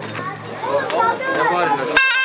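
A mix of people's voices, several talking and calling out over one another at once, some high-pitched like children's shouts.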